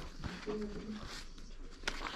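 Paper sleeves of old gramophone records rustling as they are leafed through, under faint talk, with one sharp click near the end.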